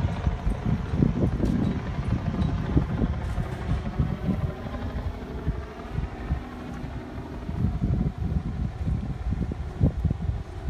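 Wind buffeting the microphone in uneven low gusts, stronger in the first few seconds, easing around the middle and picking up again near the end.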